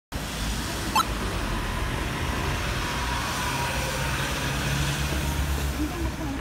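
Street traffic noise with a vehicle's engine running nearby, a low steady hum in the second half. There is one short sharp click about a second in.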